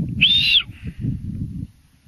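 A short, high whistle, about half a second long, that rises and then falls in pitch, over a gusty rumble of wind on the microphone.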